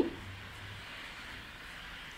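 Faint steady hiss of room tone, with a low hum in the first second, between spoken sentences.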